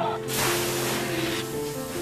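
Firefighter's hose nozzle spraying water: a loud rushing hiss that starts about a quarter second in and cuts off just before the end, over background music with steady held notes.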